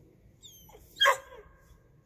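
A dog gives a brief high whine and then a single short bark about a second in.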